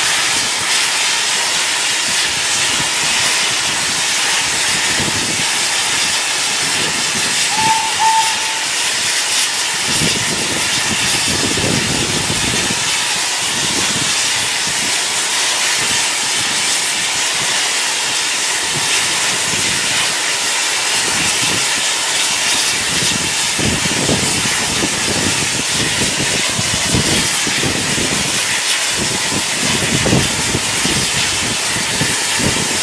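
Steam locomotive No.85 Merlin, a GNR(I) three-cylinder compound 4-4-0, hissing steam steadily while standing at the platform, with two short whistle toots about eight seconds in.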